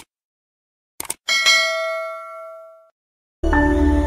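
Click sound effects, one at the start and two quick ones about a second in, followed by a bell-style notification ding that rings and fades over about a second and a half. Music starts near the end.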